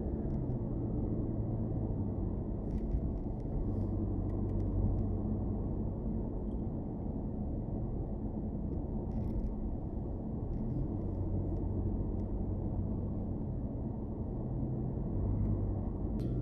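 A car driving slowly along a suburban street, heard from inside the cabin: a steady low rumble of engine hum and tyre noise, with a few faint clicks.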